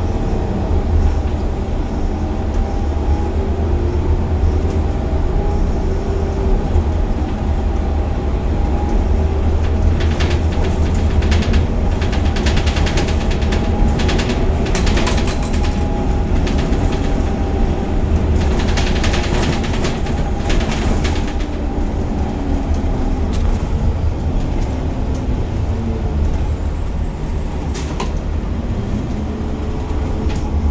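Gillig Advantage LF low-floor transit bus under way, heard from the driver's seat: a steady low engine and road rumble, with the engine and transmission pitch sliding up and down as the bus changes speed. Runs of rattling and clicking come and go from about ten to twenty seconds in.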